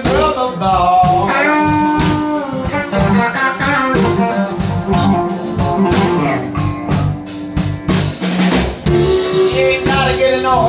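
Live blues band playing loudly: electric guitars with notes that bend in pitch over bass guitar and a drum kit keeping a steady beat.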